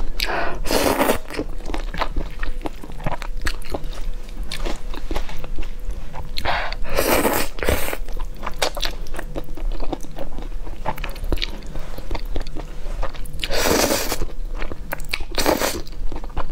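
Close-miked eating of saucy stir-fried noodles: several long slurps as mouthfuls are sucked in, about a second in, around seven seconds and twice near the end, with wet chewing and smacking between them.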